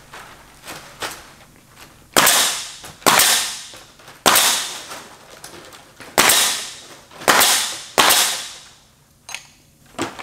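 Pneumatic nail gun firing six times at uneven intervals of about a second, starting about two seconds in, driving nails through synthetic thatch shingles into the wooden ridge. Each sharp shot is followed by a short echoing tail.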